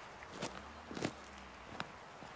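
Footsteps on stony, grassy ground: three faint steps.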